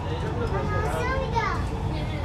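Children's high voices chattering inside a Dubai Metro carriage, over the steady low rumble of the train running.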